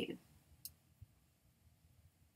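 A single short, sharp computer mouse click about two-thirds of a second in, followed by a faint low knock, in a quiet room.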